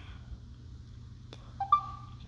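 A single click, then a short rising two-note chime from the LG Stylo 6 phone's alert as its Bluetooth pairing request pops up.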